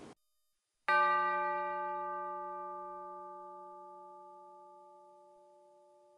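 A single struck bell, about a second in, its several ringing tones dying away slowly over the next five seconds.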